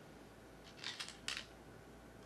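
Go stones being placed on the commentary demonstration board: two short clacks about a second in, the first with a brief scrape.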